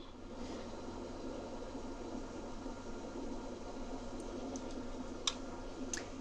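Low steady room noise, a fan-like hiss and hum, with a few faint clicks in the last two seconds.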